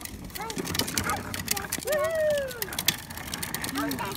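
Hard plastic wheels of a Little Tikes Cozy Coupe ride-on car rolling over a concrete driveway, giving a dense, irregular clicking rattle. A high-pitched voice calls out once about two seconds in, falling in pitch.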